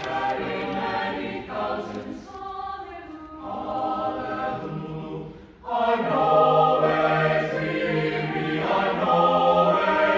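Mixed choir singing a gospel spiritual in several-part harmony. The singing briefly drops away about five and a half seconds in, then comes back fuller and louder.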